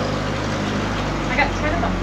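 Steady low drone of a nearby vehicle engine idling, with faint voices in the background.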